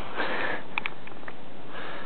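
A man's breaths close to the microphone: one breath at the start and another near the end, with a couple of faint clicks in between, over a steady hiss.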